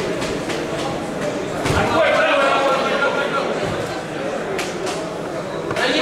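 Overlapping, indistinct voices echoing in a large sports hall, with one louder voice calling out for about a second and a half, starting about two seconds in.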